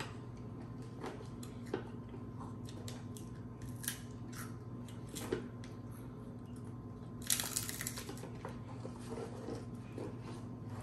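Small scattered clicks and crunches of baby snack puffs being chewed and handled, with a short rustle of a snack canister's packaging about seven seconds in, over a steady low hum.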